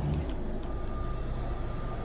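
Low, steady rumble of a TV drama's background soundtrack, with a thin high tone held throughout and a fainter middle tone joining a little past halfway.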